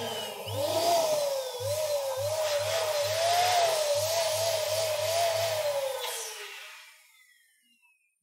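Electric balloon pump running as it inflates a latex balloon: a rush of air with a wavering hum. It fades out about seven seconds in.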